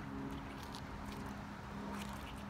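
Quiet outdoor background on a wet street: a steady low hum with two pitches, like a distant engine, with a few faint light taps.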